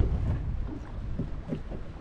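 Wind buffeting the microphone, a fluctuating low rumble, with a few faint knocks.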